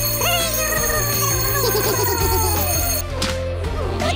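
An electronic alarm ringing from an Eilik desktop robot as its alarm-clock timer goes off, stopping suddenly about three seconds in, over background music and gliding electronic chirps.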